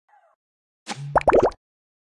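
Animated logo intro sound effect: a short run of quick, rising 'bloop'-like pitch sweeps over a low hum, lasting under a second, starting about a second in and cutting off suddenly.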